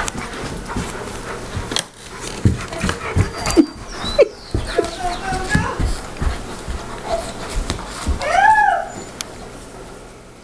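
A dog whining at play: a few short whimpers, then one strong whine that rises and falls near the end. Scattered thumps and scuffles on the carpet run through the middle.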